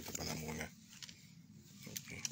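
Handling noise from a phone's microphone as fingers rub and tap over it, with scattered clicks. In the first half-second there is a short, low pitched hum-like sound.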